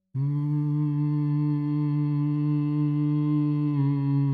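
A baritone humming with closed mouth: one long, steady note that starts abruptly after a moment of silence and wavers slightly near the end.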